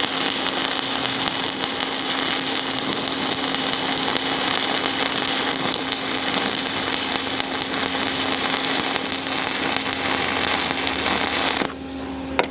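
Stick-welding arc from a 1/8-inch 7018 low-hydrogen electrode burning on a flat steel plate: a steady, continuous crackle and sizzle with a low hum beneath. The arc is broken and the sound cuts off suddenly near the end.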